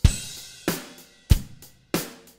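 A multitrack drum loop playing back: four drum hits about two-thirds of a second apart, kick and snare with a cymbal wash ringing between them.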